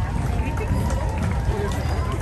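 Outdoor street-parade ambience: background chatter of onlookers over a steady low rumble, with a faint held tone in the middle.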